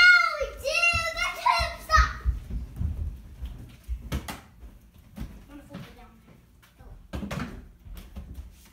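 A child's loud, drawn-out shout in the first two seconds, then scattered light knocks and thumps in a small room.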